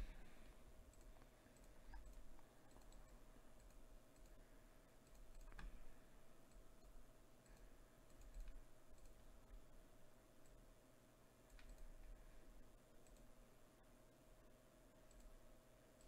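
Near silence: room tone with a faint steady hum and a few faint, scattered clicks.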